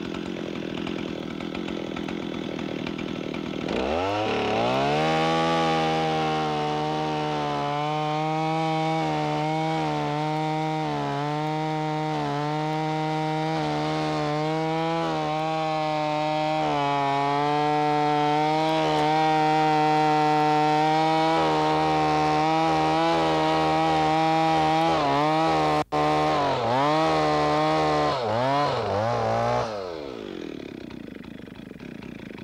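Two-stroke chainsaw idling, then opened to full throttle about four seconds in and cutting steadily through a large log for over twenty seconds, its pitch wavering slightly under load. Near the end the sound cuts out for an instant, the throttle rises and falls a few times, and the saw drops back to idle.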